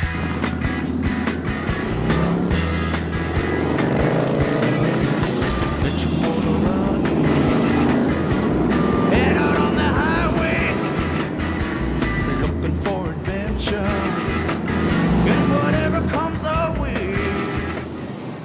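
A column of cruiser motorcycles riding along a freeway, their engines running together, mixed with background music.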